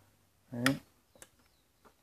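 A short voiced sound about half a second in, then a faint sharp click a little after a second in and a smaller one near the end: the relay on a Whirlpool no-frost refrigerator control board pulling in as the board is powered.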